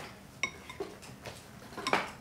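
Wooden chopsticks clinking against ceramic bowls, a few separate clinks, the first with a short ring and the loudest near the end.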